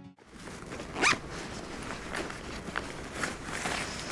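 Backpack zipper being pulled: one loud rasping zip about a second in, then several shorter ones as the bag is handled.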